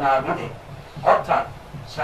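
A man's voice over a microphone, then two short barks from a dog a little past a second in.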